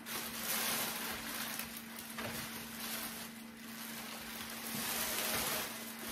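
Rustling and crinkling of the plastic protective bag as it is pulled off a Thermomix TM6 food processor, in uneven swells.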